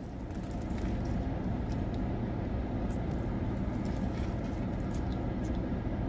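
A man chewing a big bite of burger with kettle chips in it, with a few faint crunches, over a steady low hum in a car's cabin.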